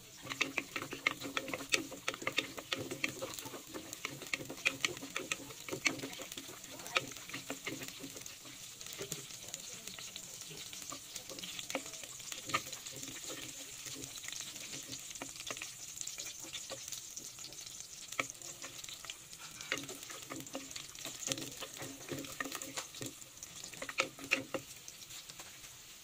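Garlic cloves and whole spices (star anise, cinnamon, cloves) sizzling gently in oil in a glazed clay pot, with a steady hiss. A wooden spoon stirs them, clicking and scraping against the pot, most busily in the first few seconds and again near the end.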